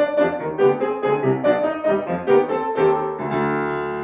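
Grand piano playing a classical passage of separate notes, several a second, that settles into a held, ringing chord near the end.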